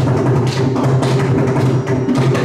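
Mridangam playing a dense run of strokes over a steady low drone, typical of the percussion solo (tani avartanam) in a Carnatic concert.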